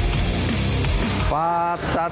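Loud background rock music, which stops about two-thirds of the way in as a man starts speaking.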